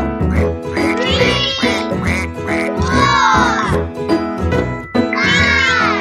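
Cheerful children's song backing with a steady beat, over which a high, squeaky cartoon duckling call sounds three times, about two seconds apart, each call sweeping up and falling away.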